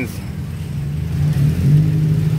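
A motor vehicle's engine running close by, a steady low hum that grows louder about a second in.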